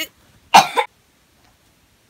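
A single short, loud cough about half a second in.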